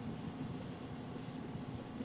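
Low, steady background hum and hiss with no distinct events: room tone.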